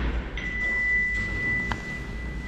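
Passenger elevator arriving and opening its stainless steel doors: a single steady high electronic tone starts about a third of a second in and holds, with a short click near the end over a low hum.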